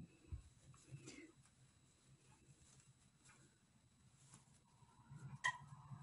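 Near silence, with a few faint soft rustles and small clicks of yarn being worked with a crochet hook.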